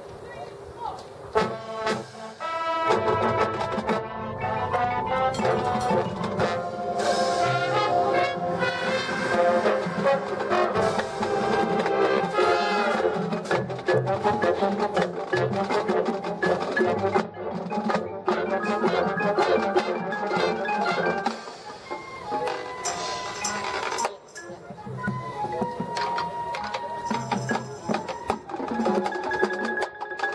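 High school marching band playing its competition field show: brass and winds with drums and front-ensemble mallet percussion. The band comes in loud and full a couple of seconds in, then drops to a softer passage near the end.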